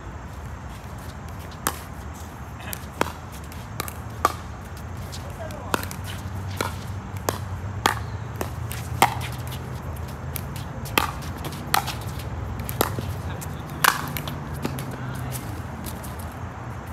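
Pickleball rally: the sharp pops of paddles striking a hard plastic pickleball, a dozen or so hits about a second apart, over a low steady background rumble.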